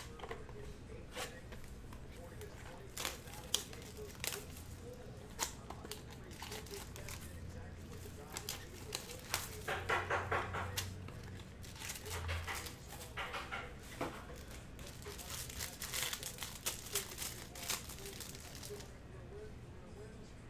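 Plastic shrink-wrap being torn off a sealed trading-card box and crinkled, with sharp clicks of the cardboard box and cards being handled. The crinkling comes thickest in spells about halfway through.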